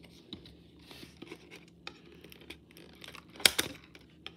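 A stack of football trading cards being handled and shuffled: soft clicks and rustles of card and plastic, with one louder, sharper rustle or tear about three and a half seconds in.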